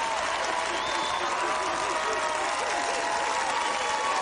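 Studio audience applauding and cheering, with many voices hooting over steady clapping.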